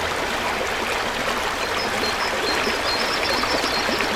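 Creek water rushing steadily over a shallow, rocky riffle.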